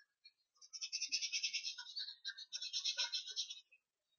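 Faint, rapid back-and-forth scratching of a pen on a drawing surface, several quick strokes a second, pausing briefly about two seconds in.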